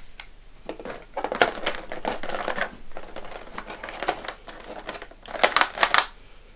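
Clear plastic blister packaging crinkling and crackling as it is handled, with a run of sharper clicks near the end.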